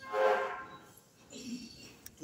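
Church choir singing during Mass: one short sung note at the start, then a brief lull between phrases.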